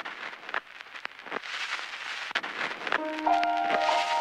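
Scratchy old-record surface noise, a steady hiss with scattered crackles and pops, at the start of a song recording made to sound like an old record. About three seconds in, instrumental music begins over it with steady held notes.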